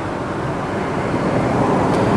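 Steady rushing background noise with no distinct events, like the hum of traffic or outdoor air.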